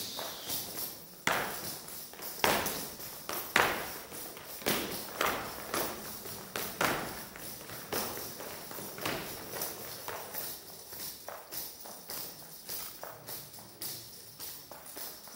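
Leather boots stamping on a wooden dance floor, several dancers striking together in an unaccompanied rhythmic men's folk dance step; the sharp stamps come roughly once a second with lighter taps between, the loudest a few seconds in.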